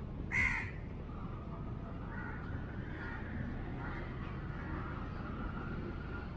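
A bird gives one short, harsh call about half a second in, the loudest sound here, followed by faint chirping of other birds over a low steady background.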